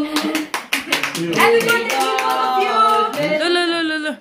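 People singing together and clapping along in time, with held sung notes throughout.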